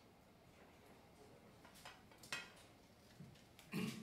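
Quiet room tone with a few faint clicks and rustles of sheet music being handled, and a brief low voice sound near the end.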